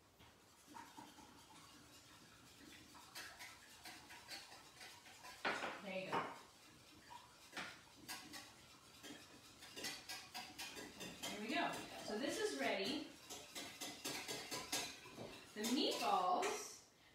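Kitchen utensils knocking and scraping against bowls and dishes, a scattered run of light clicks and clinks.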